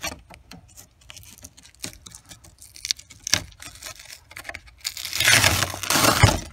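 Fingers picking and scraping at adhesive tape, with scattered small clicks, then a loud rip of tape and velcro being torn away about five seconds in.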